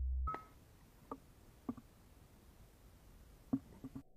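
A low steady hum that cuts off suddenly just after the start. Then faint hiss with about five short, soft clicks scattered through the rest, the first one carrying a brief beep-like tone.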